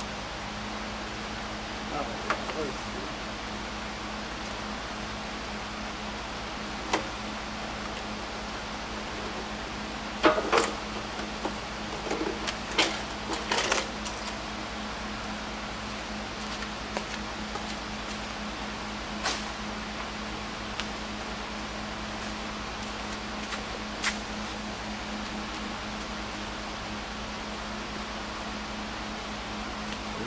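Scattered clinks and knocks of hand tools and metal parts as the front end of a car is taken apart, over a steady low hum. The busiest spell of clinks comes in the middle.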